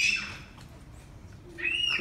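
A pause in a man's amplified speech. There is a short hissing breath or sibilant at the start and another near the end, with a quieter stretch of room tone between.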